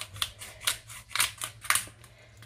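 A small knife cutting a garlic clove held in the hand, in short crisp strokes about twice a second.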